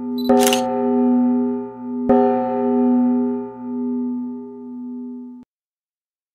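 A single held musical note, struck again twice and swelling and fading in a slow pulse, with a short sharp click near the start; it cuts off suddenly about five and a half seconds in, and silence follows.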